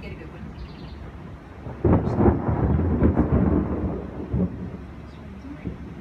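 Thunder: a sudden loud rumble breaks out about two seconds in, stays loud for a couple of seconds and dies away.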